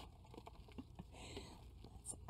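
Faint patter and small crackles of gloved hands working loose potting soil around a plant in a pot.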